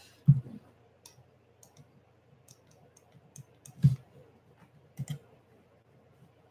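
Scattered light clicks and taps, with louder soft knocks about a third of a second in, just before four seconds, and at five seconds.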